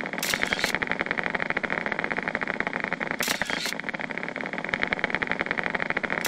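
Needle-EMG loudspeaker playing the motor unit potentials of a contracting triceps brachii as a rapid, steady crackle of clicks. The unit firing rate is rising and new motor units are being recruited as the voluntary contraction increases. Brief bursts of hiss break in about every three seconds.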